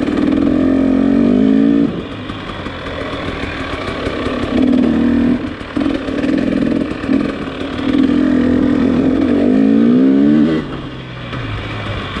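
Dirt bike engine being ridden on and off the throttle. Its pitch climbs and then drops back several times, with the longest climbs about a second in and again near the end.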